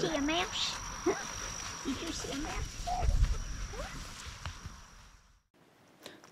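Outdoor ambience with a steady high-pitched insect drone, faint voices and a brief laugh at the start, and a low rumble about three seconds in. It cuts to near silence about five and a half seconds in.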